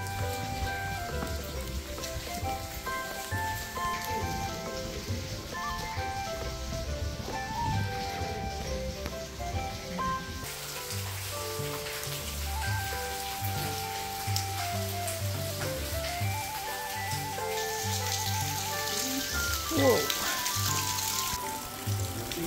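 Background music: a melody of stepped notes over a steady bass line. In the last few seconds a hiss of water dripping and spattering off the rock face joins it.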